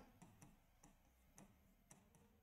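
Near silence with a few faint, irregular ticks of a marker writing on a whiteboard.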